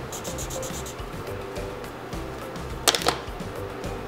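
Felt-tip marker scribbling quickly on sketchbook paper in short scratchy strokes, over soft background music, with a couple of sharp clicks about three seconds in.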